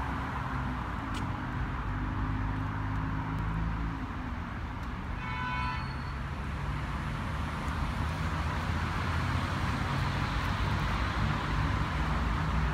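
Steady outdoor background rumble with a low hum for the first few seconds, and a brief high toot a little over five seconds in.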